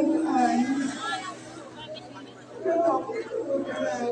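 Speech: voices talking, with background chatter.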